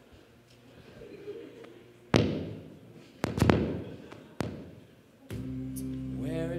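Four loud, sudden booming hits, each ringing out and fading: one about two seconds in, two in quick succession about a second later, and one more just after four seconds. Sustained music with held chords starts near the end.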